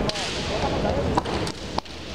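Sharp clacks of bamboo shinai striking during a kendo exchange: one crack right at the start, then a quick run of three cracks after about a second.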